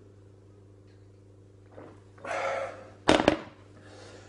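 An empty pint glass set down hard on a surface: two sharp knocks close together about three seconds in, after a short gasp of breath at the end of drinking it down.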